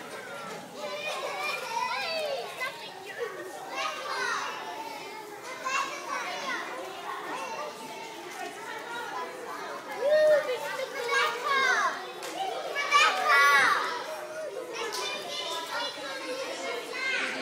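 A crowd of overlapping children's voices and chatter, with adults talking under them. The calls are high-pitched and grow louder in the second half.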